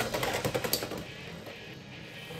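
Two Beyblade X spinning tops running on a plastic stadium floor, with rapid fine clicking and rattling in the first second that fades to a quieter whir.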